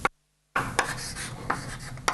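Writing on a board during a lecture: a run of short, irregular taps and scrapes over a steady low hum. The audio cuts out completely for about half a second near the start.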